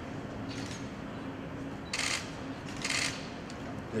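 Steady low room hum with two short hissy rustles, about two and three seconds in.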